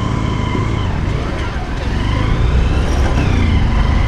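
Small motorcycle or scooter engine running on the move, getting louder about two seconds in as it pulls harder, with a high whine gliding up and down above it.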